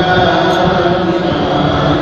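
A voice chanting in long, held melodic notes.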